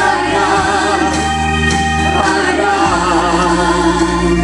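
Two women singing a contemporary gospel worship song together into microphones, with vibrato. An accompaniment of sustained low notes runs underneath and changes chord about half a second in and again near three seconds.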